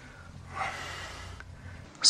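One breathy sound of a person's breath, lasting about a second from about half a second in, over a faint low hum.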